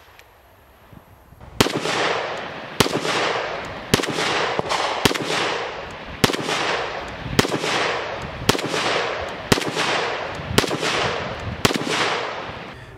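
Czech vz. 52 semi-automatic rifle firing 7.62×45 mm surplus ammunition: starting about a second and a half in, about ten evenly paced shots a little over a second apart, each followed by a long fading echo.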